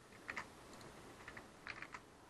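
Faint typing on a computer keyboard: a few scattered keystrokes, with a short run of them near the end.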